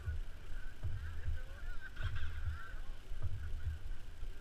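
Dirt-bike engines idling and being blipped on a race start line, muffled as if through a camera housing, with faint wavering pitches and irregular low thumps.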